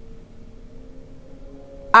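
Faint background music: a few soft held tones that shift slightly in pitch, under a pause in a woman's speech, which starts again right at the end.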